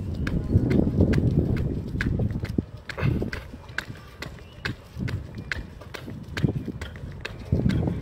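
Jogging footsteps on a paved street, a steady rhythm of about two to three footfalls a second, picked up by phones held at arm's length. A low rumble, heaviest in the first few seconds, runs under the steps.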